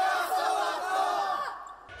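A team of teenagers shouting together in a huddle: one long team cheer of many voices at once, dying away near the end.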